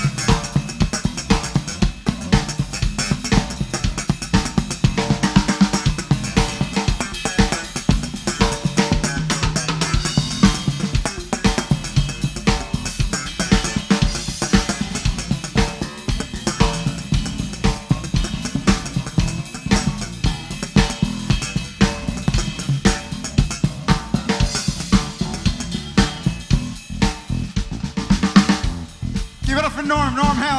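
Live blues band playing an instrumental passage: a drum-kit groove of snare, bass drum and hi-hat with electric bass underneath, without vocals. The music drops briefly just before the end.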